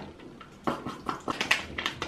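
Hair-bleach kit packaging and a plastic mixing bowl being handled: a quick run of short rustles and clicks that starts about half a second in.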